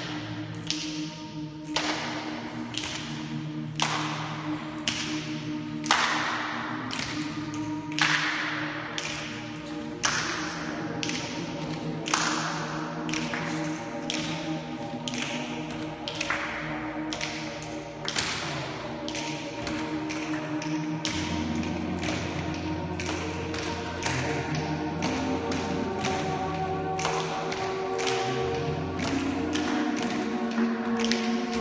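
A group of people clapping hands in a steady rhythm, roughly two claps a second, over several held humming tones from their voices; a deeper held tone joins about two-thirds of the way through.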